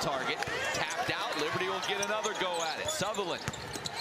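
Arena sound of a basketball game: a basketball bouncing on the hardwood court several times, over a steady mix of player and crowd voices.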